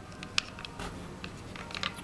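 Handling noise of a plastic Contour HD action camera being slid onto its mount's rail, with a sharp click about half a second in and a few lighter clicks near the end.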